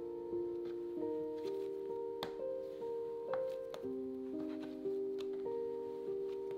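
Quiet background music of slow, sustained keyboard notes, the chord changing about once a second.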